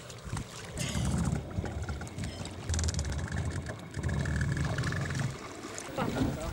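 Wind buffeting the microphone in three rumbling gusts, over the slosh of shallow sea water around a coastal rowing boat being pushed off and boarded.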